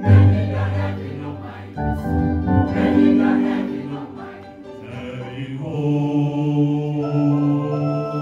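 Mixed choir of men and women singing an old Seventh-day Adventist song in sustained chords over keyboard accompaniment. The singing softens about four seconds in and swells again.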